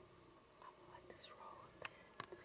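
Faint whispering by a woman, with a sharp click near the end.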